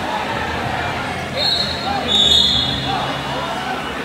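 Two short, high, steady whistle blasts, the second a little longer, over the chatter of a crowded gym; typical of a wrestling referee's whistle.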